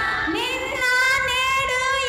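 A woman singing praise, sliding up into a long held note about half a second in.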